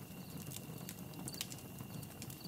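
Faint night-time ambience of insects: a steady high tone with a few soft clicks scattered through it.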